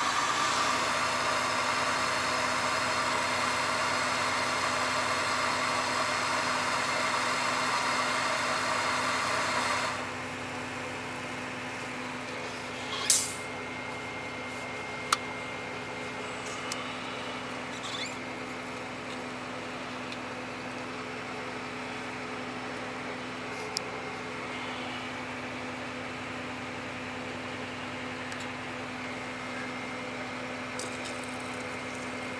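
Portable gas burner hissing as a mug of water boils on it, cut off abruptly about ten seconds in. A steady tractor engine idle hums underneath throughout, with a few sharp clicks as the mug and thermos are handled afterwards.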